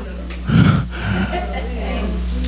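A man's voice at a microphone, heavy breaths and exclamations without clear words, over a low sustained organ drone.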